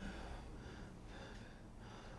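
A person's heavy, gasping breaths, quiet and repeated about twice a second.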